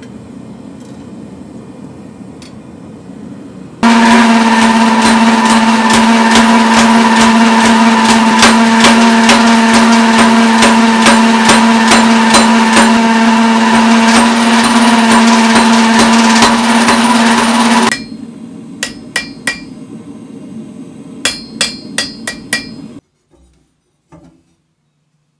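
Power hammer running flat out on red-hot spring steel, a fast run of heavy blows over a steady machine hum, for about fourteen seconds. It stops suddenly, and a few separate sharp metal strikes follow.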